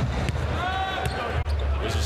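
Basketball bouncing on a hardwood court over steady arena background noise, with a held tone lasting nearly a second near the middle.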